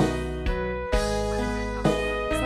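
Live band playing an instrumental passage between sung lines: held melodic notes over a steady bass line, with a drum hit about once a second.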